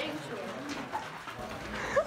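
Indistinct voices of people talking, with a short, loud rising vocal sound at the very end.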